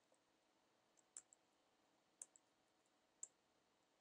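Faint, sparse clicks of computer keyboard keys being typed, about five or six keystrokes, some in quick pairs, with near silence between them.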